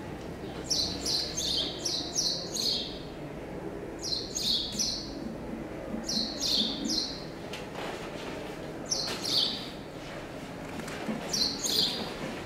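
A small bird chirping in quick clusters of three to five short, falling chirps, a cluster every two seconds or so, over a low room murmur.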